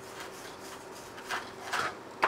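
A metal-tipped digging tool scraping and chipping at a crumbly sediment brick in short, gritty strokes. The two clearest scrapes come past the middle and near the end.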